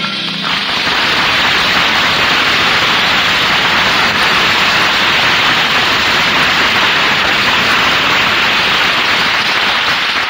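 Sustained audience applause, a dense even clatter of clapping that begins as the closing music cuts off and continues without letting up.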